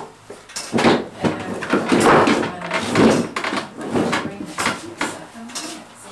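Irregular wooden knocks and scrapes, about ten over the stretch, as a wooden bench is shifted on the floor in front of a carillon's baton console.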